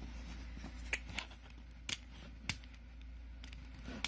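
A Nintendo DS Lite being handled: four light plastic clicks spread over a couple of seconds as its buttons and switch are worked, over a faint steady low hum.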